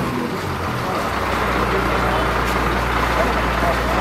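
Crane truck's diesel engine running steadily with a low hum, under the chatter of people's voices.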